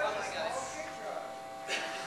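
A steady electrical buzz from the stage sound system, under indistinct voices in the room, with a sharp click near the end.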